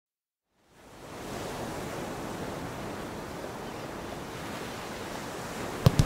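Steady rushing sound of ocean surf that fades in after a moment of silence, the intro of a kaneka track; a sharp percussion hit comes right at the end as the music starts.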